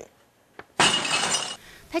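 News-broadcast transition sound effect: after a moment of near silence, a sudden hissing burst lasting under a second, ending in a quieter tail.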